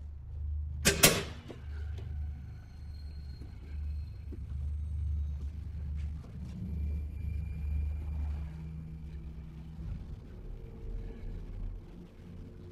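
A steady low rumble, with two sharp bangs in quick succession about a second in, followed by faint thin high tones.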